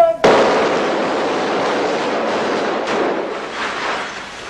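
A rapid volley of squib charges and glass poppers going off, with tempered display-case glass shattering. It starts abruptly with a sharp bang and keeps up as a dense, continuous crackle for about three and a half seconds, easing off near the end.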